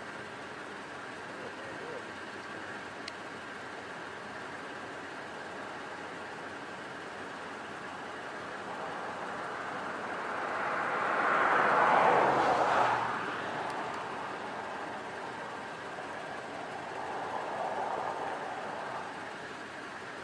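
A vehicle passing by: its noise rises to a peak about twelve seconds in and fades, over a steady background hiss, with a fainter swell near the end.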